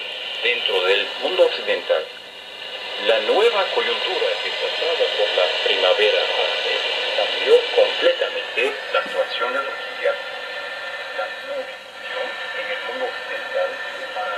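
Speech from a distant AM broadcast station received on a home-built shortwave receiver with its IF filter in the broad position. The audio is thin, cut off at the low and high ends, with steady whistle tones running under the voice.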